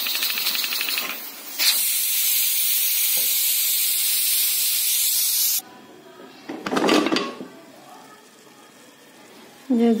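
Aluminium pressure cooker venting steam: a loud, steady hiss that dips briefly about a second in and cuts off suddenly about five and a half seconds in, as its pressure is let out at the end of cooking. A short clatter follows about a second later.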